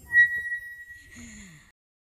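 Outro sound effect: a sharp, high ding that holds one steady pitch for about a second and a half, with a short falling tone underneath near the end, then cuts off.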